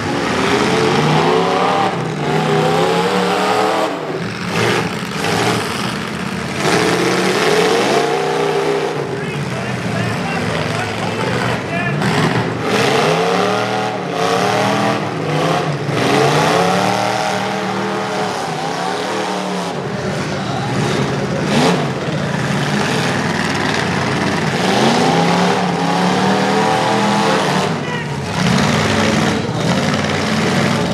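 Several demolition derby trucks' engines revving hard and easing off over and over as they drive and ram one another on a dirt track, with occasional sharp crashes of metal on metal.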